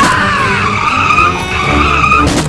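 Car tyres squealing in a long skid on tarmac: a high screech that rises briefly in pitch, then holds steady. A low rumble runs under it.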